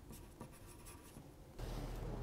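Pen scratching on paper in short, faint strokes. About one and a half seconds in, it gives way to a steady low hum of outdoor background.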